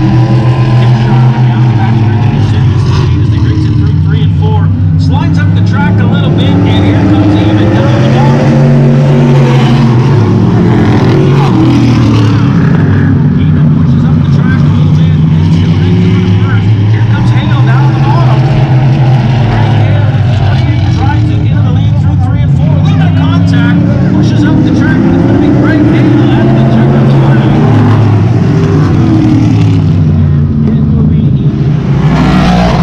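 Dirt-track race cars running laps on the oval, their engines loud and continuous. The pitch rises and falls and the sound swells again every several seconds as the cars come round.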